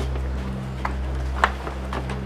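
Footsteps of a few people walking in through a doorway: a couple of sharp steps, the loudest about one and a half seconds in, over a steady low hum.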